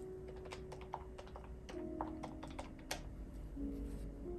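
A quick, irregular run of small sharp taps and clicks of a pen working on notebook paper at a desk, over quiet piano music.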